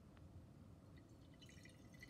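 Faint trickle of water poured from a glass graduated cylinder into a glass Erlenmeyer flask, a little more audible near the end.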